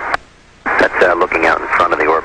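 A voice over an air-to-ground radio link, thin and narrow-sounding, in two stretches with a brief pause about half a second in.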